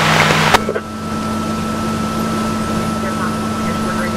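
A radio's static hiss cuts off with a click about half a second in, leaving a fire engine's engine droning steadily inside the cab, with a thin steady high whine over it.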